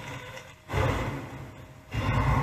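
The anime's soundtrack playing: a sudden deep rumbling sound effect comes in about two-thirds of a second in and fades over about a second, and another starts just at the end.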